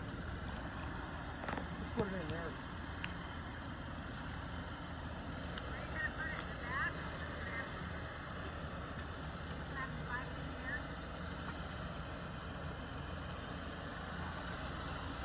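A vehicle engine idling steadily at low speed.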